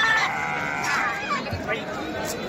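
Goats bleating: a long, wavering bleat that ends about half a second in, then a shorter call falling in pitch.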